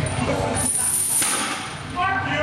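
Loaded barbell with chains hanging from it lowered from a deadlift lockout and set down on the platform. The chains clank and rattle as they pile onto the floor, in a burst starting about half a second in that stops abruptly a little past a second.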